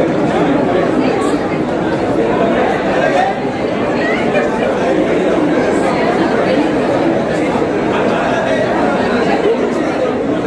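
Several people talking at once: a steady babble of overlapping voices, with no other sound standing out.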